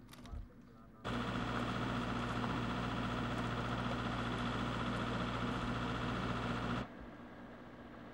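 Loud, steady engine or machinery noise with a constant low hum. It cuts in suddenly about a second in and stops just as suddenly near the end.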